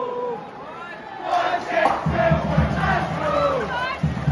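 Ice hockey arena crowd shouting and chanting, dipping briefly and then swelling louder about a second in.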